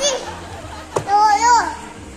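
A young child's high-pitched playful voice making a drawn-out rising-and-falling vocal sound without words. A short sharp knock comes just before it, about a second in.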